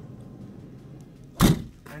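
A single heavy slam about one and a half seconds in, as the fire truck's metal cab door is shut.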